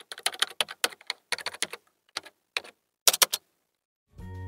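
Computer keyboard typing: a run of quick, irregular key clicks, thinning out after the first second and a half and ending with a quick bunch of three clicks about three seconds in.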